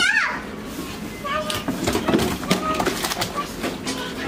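Children's voices in the background, short calls and chatter at play, with a few sharp knocks.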